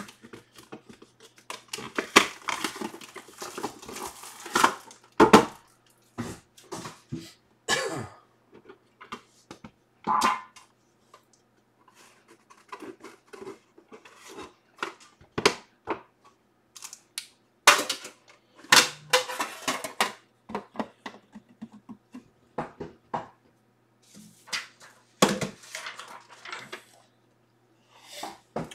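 Hands unsealing a boxed trading-card pack: crinkling and tearing of the plastic wrap, then the box's silver-lined tin being opened and handled. The sound is irregular rustles, scrapes and clicks with short pauses.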